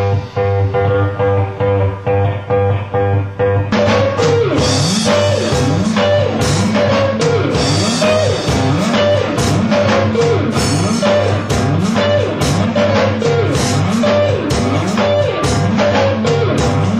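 Rock band playing: a repeated guitar figure, then about four seconds in the drums and bass come in under sliding guitar riffs.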